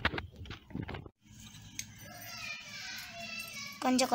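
Children's voices faintly in the background, then a child's voice starts up loudly close by near the end. In the first second there are a few sharp clicks.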